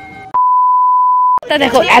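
A single steady electronic beep, one pure tone about a second long that starts and stops abruptly, with silence around it: an edited-in bleep at a cut in the video. Talking begins just after it.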